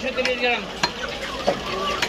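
A large butcher's knife knocking on a wooden chopping block as chicken is cut, a few sharp knocks about half a second apart, over a busy background with a murmur of voices.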